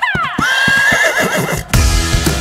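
A horse whinnying: a call that falls in pitch, then a high wavering one, over the thuds of galloping hooves. Loud music with a heavy bass comes in suddenly near the end.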